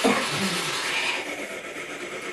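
A person's voice briefly at the start, trailing off into a soft, even hiss of room noise.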